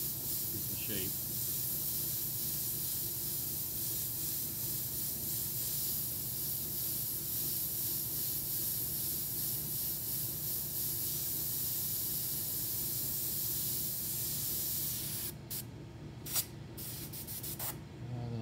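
Airbrush spraying paint in a steady, continuous hiss; about fifteen seconds in the hiss stops, and a few short spurts follow.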